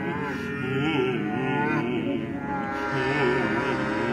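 Contemporary chamber music from a small ensemble: several sustained, overlapping pitches that waver slowly up and down.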